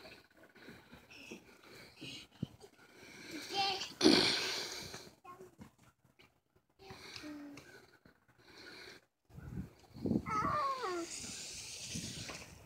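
A toddler's voice: faint babbling, then falling, gliding calls near the end as she slides down a plastic playground slide. A loud burst of rustling noise comes about four seconds in.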